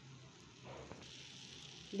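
Faint sizzling of semolina halwa cooking in ghee in a pan as it is stirred with a silicone spatula; the soft hiss grows slightly about half a second in.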